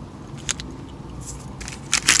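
Plastic-foil protein-bar wrapper crinkling as it is handled and picked up: one short sharp crackle about half a second in, then faint rustling that turns into louder crinkling at the end.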